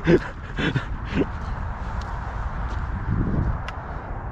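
Three short human vocal sounds, each falling in pitch, within the first second and a half, over a steady low rumble, with a few faint clicks later on.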